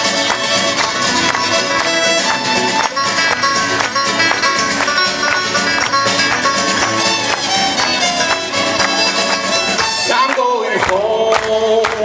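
Live bluegrass band playing an up-tempo number with fiddle, five-string banjo, acoustic guitars and drums on a quick, even beat. The band stops about ten seconds in, leaving long held vocal notes as the song ends.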